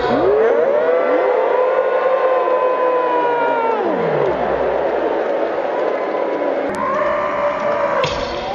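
A crowd of fans screaming together in one long cry that rises, holds and falls away about four seconds in. Scattered screams and voices follow.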